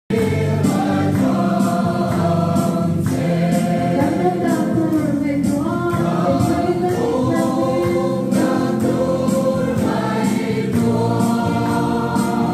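A roomful of people singing a song together, with hand clapping keeping a steady beat about twice a second.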